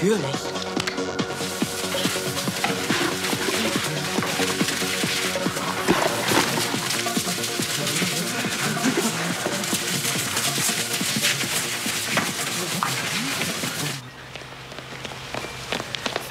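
Background music playing over the scene, which cuts off suddenly about two seconds before the end.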